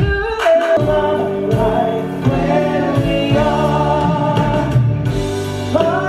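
A cast of singers performing together live over backing music, holding long choir-like chords. A new phrase comes in near the end.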